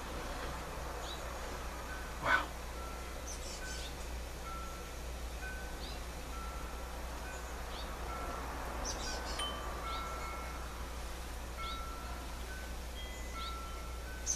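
Light, chime-like ringing notes at a few different pitches, struck one at a time at irregular intervals. Faint short chirps come in between, and there is a brief rustle or knock about two seconds in.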